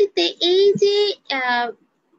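A woman's high voice speaking in a drawn-out, sing-song way, with long held vowels. It stops shortly before the end.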